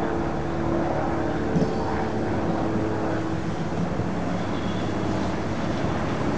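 Drachenfelsbahn electric railcar on its Riggenbach rack line approaching at low speed: a steady motor and gear hum with a few held low tones.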